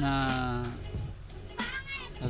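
Background music with a long, slightly falling vocal sound at the start and a shorter, rising one near the end.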